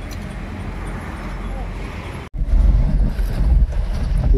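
Outdoor wind noise on the microphone: a steady hiss with a low rumble. It cuts off abruptly about two seconds in, then comes back as louder, gusty buffeting.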